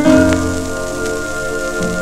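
A shellac 78 rpm record playing on a Goldring Lenco GL 75 turntable. A chord sounds at the start and is held, and the low notes change near the end, all over steady surface crackle and hiss from the shellac.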